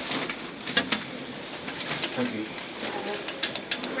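Several sharp clicks of a finger pressing the lift car's stainless-steel push buttons: a couple about a second in, then a quick cluster near the end. Low murmured sounds run between the clicks.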